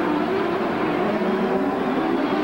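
Engines of several 1995 CART Indy cars, turbocharged V8s, running past on a street circuit, heard through broadcast trackside microphones. It is a steady drone, with a few engine pitches wavering slightly as the cars pass.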